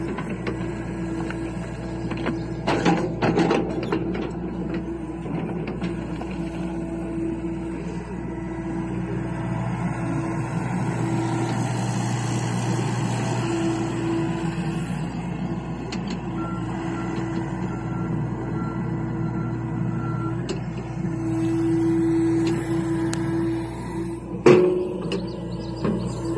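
John Deere compact excavator's diesel engine running under hydraulic load as it pushes and spreads dirt with its bucket. A steady whine swells and fades, there are a few knocks about three seconds in, and later come faint alarm beeps at about two a second.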